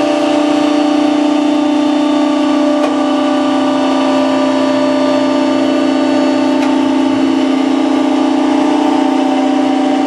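Clark horizontal baler's hydraulic power unit running: a 7.5-hp three-phase electric motor drives the hydraulic pump, giving a loud, steady hum of constant pitch as the platen ram makes its reverse stroke.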